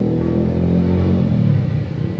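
A vehicle engine running close by, with an engine rumble and a steady low drone.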